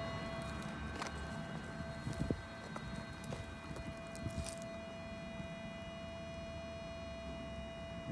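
A few footsteps on loose dirt and dry twigs, short scuffs mostly in the first half, over a steady faint high tone that drops out for a moment about three seconds in.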